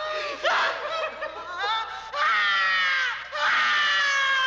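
Young men laughing hard, then long, high-pitched screams that slide slowly down in pitch, one about two seconds in and another near the end.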